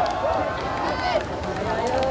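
A woman speaking into a handheld microphone: speech only.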